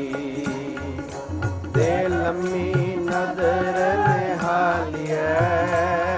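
Gurbani kirtan: voices singing a shabad to harmonium and tabla, the tabla keeping a steady beat of low bass strokes and sharp treble strikes. A fresh sung line comes in about two seconds in.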